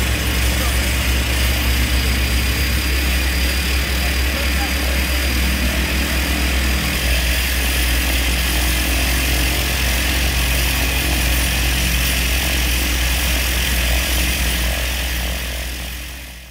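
Cessna Caravan single-engine turboprop running steadily at idle, a deep, even drone with hiss above it, fading out near the end.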